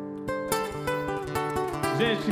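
Acoustic guitar played through the PA: a chord rings on, then fresh strums follow from about half a second in.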